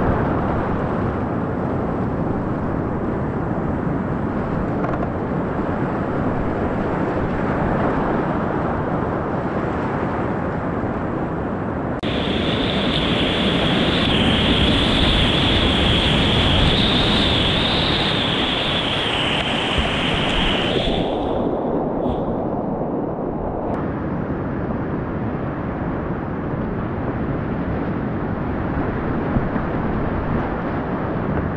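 Upper Gauley River whitewater rapids rushing loudly around a kayak, heard from the boat. Through the middle of the clip, for about nine seconds, a high steady tone sits over the water noise.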